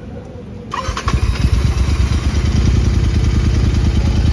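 Royal Enfield Continental GT 650's parallel-twin engine, warm from riding, started up under a second in and then idling steadily through an aftermarket long-type exhaust, an evenly pulsing exhaust note.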